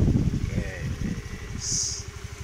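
Scooter engine running, a low rumble with even pulses, with a short stretch of voice about halfway and a brief hiss near the end.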